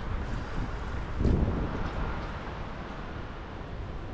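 Gusty wind on the microphone, a steady rough rushing noise.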